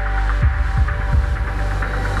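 Cinematic intro sound design: a deep bass drone with a steady high tone above it, and low thuds about three a second from about half a second in.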